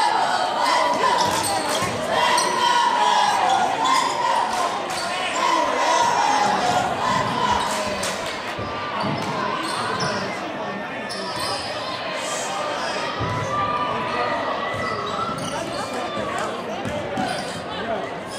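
Basketball being dribbled on a hardwood gym floor, echoing in a large hall, with voices from players and spectators around it.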